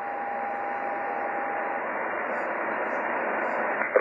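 Shortwave SSB receiver hiss from an HF transceiver tuned to the 21 MHz amateur band, in a pause between transmissions. A steady heterodyne whistle from an off-frequency carrier sits on the noise and stops about two seconds in.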